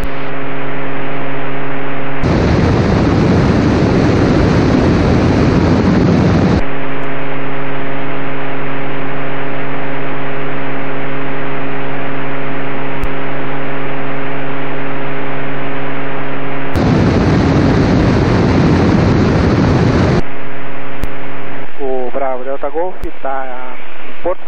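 Steady drone of the Inpaer Conquest 180's single engine and propeller in cruise. Twice, for about four seconds each, a loud hiss like radio static rises over it; speech starts near the end.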